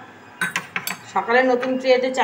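A few quick clinks of a metal spoon against steel dishes about half a second in, followed by a person's voice.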